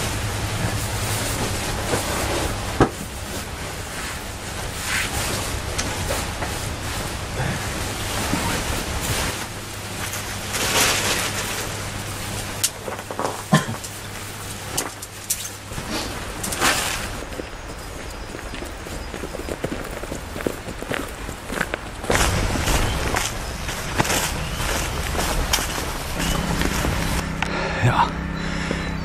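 Rustling and crinkling of a bivvy bag and camping gear being handled and packed, over a steady rush of running water from a stream and waterfall close by.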